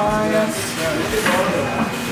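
Indistinct voices talking; nothing but speech stands out.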